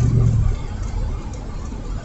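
Low, steady engine and road rumble heard from inside a moving vehicle's cabin, with a low hum that fades out about half a second in.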